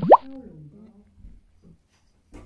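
A quick upward-sweeping "bloop" pop sound effect, the loudest sound here, right at the start. Faint low voices follow it.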